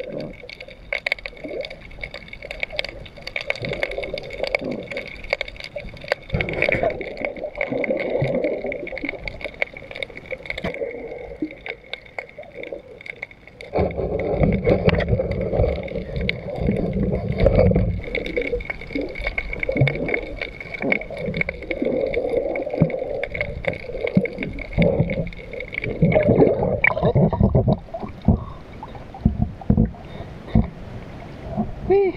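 Water sloshing and gurgling around a diver, heard through the water, with many scattered sharp clicks and crackles. About halfway through, a louder, deeper rushing of water lasts a few seconds.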